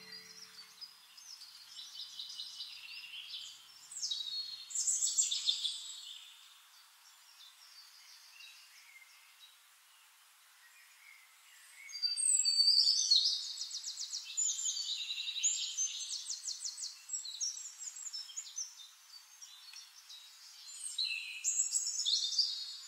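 Birds chirping and singing, with rapid trills, in bursts. There is a quiet stretch from about six to twelve seconds in, and the song returns loudest just after twelve seconds.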